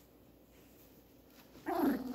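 Quiet room, then about one and a half seconds in a small dog gives one short vocal sound that falls in pitch, as two small terriers play.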